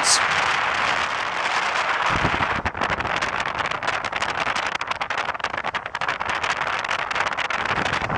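Road and wind noise of a moving car heard from inside the cabin: a steady rush that turns choppy and crackly after about three seconds.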